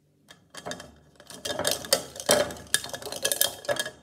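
Capped markers rattling and clicking against each other in a cup as a hand stirs through them and pulls one out: a busy clatter of many small clicks starting about half a second in.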